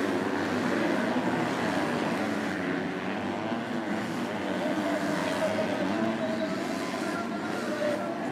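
Engines of MX2 motocross bikes racing, their pitch rising and falling as the riders rev through the corners.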